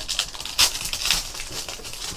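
Foil wrapper of a Panini Threads basketball card pack crinkling as it is torn open and pulled apart by hand, in a run of short crackles.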